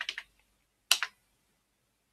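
Computer keyboard keystrokes: a quick run of key presses at the start, then one louder keystroke about a second in, the Enter key sending the typed command.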